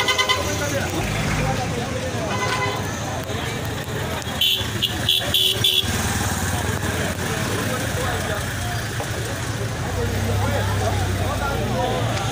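A vehicle horn sounding about four short toots in quick succession about halfway through, over the chatter of a crowd on the street. A vehicle engine runs low underneath and grows louder near the end as a pickup truck passes close by.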